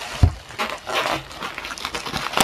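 Plastic bubble wrap rustling and crinkling as hands turn a heavy wrapped computer over, with a dull thump about a quarter second in.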